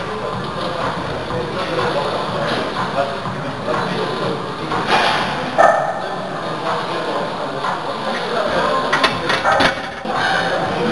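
Indistinct voices over a steady background din, with a few sharp clicks near the end.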